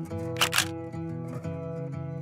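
A camera shutter clicks twice in quick succession about half a second in, over background music of plucked-string notes.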